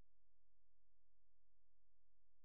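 Near silence, with no distinct sound.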